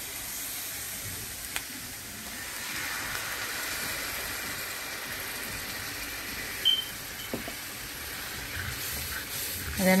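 Hot skillet of fried onions, garlic and flour sizzling and hissing as heavy cream goes in. The hiss swells a little a few seconds in, then settles, with a few light utensil clicks.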